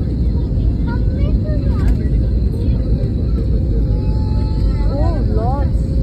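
Jet airliner cabin noise heard at a window seat: a loud, steady low rumble of engines and airflow as the plane descends on final approach to land. Faint voices carry over it, most clearly about five seconds in.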